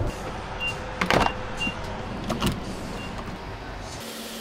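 Steady hum inside a pickup truck's cabin, with a few short faint beeps and two louder brief sounds about one and two and a half seconds in.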